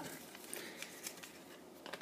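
Faint rustling and crinkling of shiny origami paper as it is folded over along a crease, with a couple of small ticks of paper against paper.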